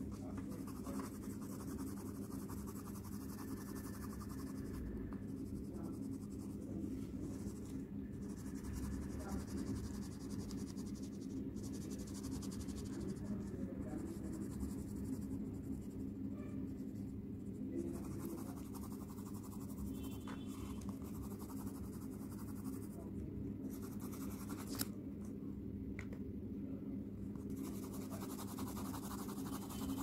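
Coloured pencil scratching on paper, on and off with short pauses, over a steady low hum.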